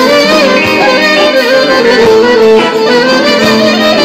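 Live Greek folk music played by a band, a clarinet leading with a winding, ornamented melody over string accompaniment.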